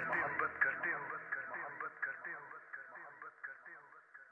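A sung vocal phrase from a Hindi song remix repeats through an echo effect about four times a second, fading away to near silence by the end.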